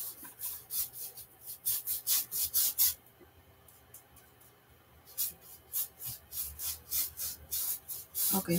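Paintbrush scrubbing acrylic paint onto a stretched canvas in short, quick, scratchy strokes. The strokes come in two runs with a quiet pause of about two seconds between them.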